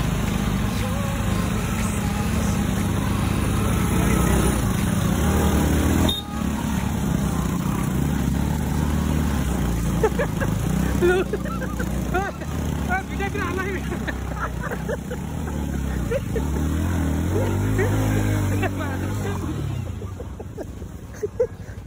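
Motorcycle engines running at low speed on a rough dirt track, with people's voices over them in the second half.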